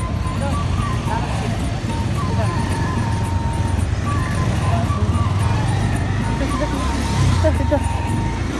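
Busy street ambience: indistinct voices and motorbike engines, with a thin melody of held, stepping notes playing over it.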